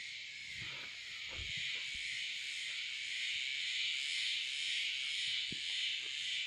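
Steady high-pitched chorus of insects in the surrounding vegetation, swelling and easing slightly, with a few faint short rustles.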